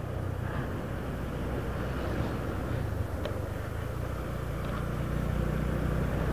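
Motorcycle engine running steadily at cruising speed, a low hum under a constant rush of wind and tyre noise, growing a little louder in the last second or so.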